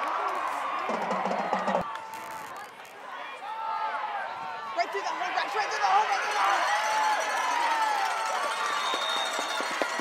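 Football stadium crowd: many voices shouting and cheering over one another, with music in the mix. A brief thin whistle, typical of a referee's whistle, comes near the end.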